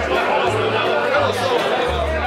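Live acoustic band among diners: an upright double bass plucking deep notes about twice a second under voices, with the room's chatter mixed in.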